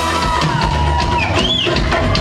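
Live reggae band playing, with drum kit and keyboards over a heavy low end; a short high tone glides up and back down about halfway through.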